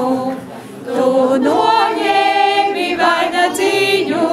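Latvian folk choir singing a folk song unaccompanied, in unison and held notes, with a short breath between phrases about half a second in and a rising line of pitch after it.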